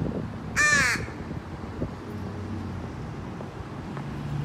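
A crow cawing once, a single harsh call a little after half a second in, over a low steady background rumble.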